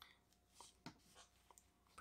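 Near silence, with a few faint, brief clicks as the plastic action figure and its fabric cape are handled.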